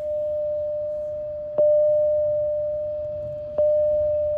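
Public-address attention chime on board a train: a single bell-like tone struck about every two seconds, each note fading slowly. It signals that a special announcement is about to follow.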